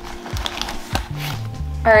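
Rustling and a few sharp clicks of packing material and plastic vials being handled in a cardboard shipping box, over background music whose low bass line becomes plain about a second in.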